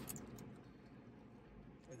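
Near silence in a car's cabin: a low steady hum, with a few faint clicks near the start.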